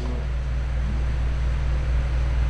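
A steady low background hum with a faint hiss above it.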